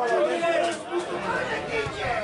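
Spectators' voices talking and calling out over one another, close to the microphone.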